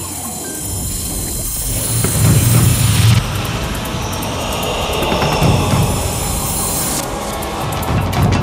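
News-programme intro music with whooshing sweeps and deep low booms. A bright whoosh cuts off sharply about three seconds in, and another about seven seconds in.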